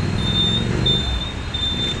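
Motor vehicle running nearby in road traffic, a steady low engine rumble, with a high-pitched beep repeating about every two-thirds of a second.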